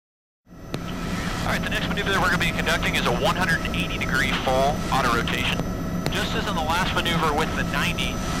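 Bell 206B helicopter cabin noise inside the cockpit in flight: the steady whine of the turbine and drone of the rotor system, cutting in suddenly about half a second in, with voices over it.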